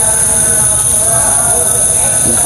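Steady chorus of night insects: a continuous high-pitched buzz with several lower steady tones under it, unbroken throughout.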